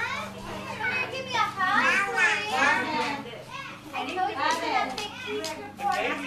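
Young children's high-pitched voices, playing and babbling with shrieks, but with no clear words.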